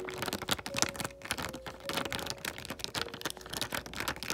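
A plastic sheet of stick-on rhinestone gems handled by fingers right against the microphone: a rapid, uneven stream of small clicks, taps and crinkles.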